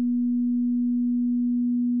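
A steady pure sine tone at about 243 Hz, the added tone layered under the track, now heard on its own. It cuts off suddenly near the end.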